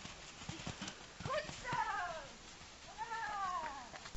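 Hoofbeats of a pony cantering on a sand arena, with an animal giving two drawn-out calls, each about a second long, rising and then falling in pitch.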